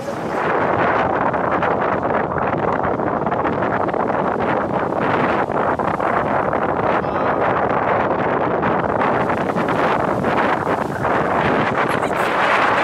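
Strong wind buffeting the microphone: a loud, continuous rush that swells and dips with the gusts, with waves breaking on the shore beneath it.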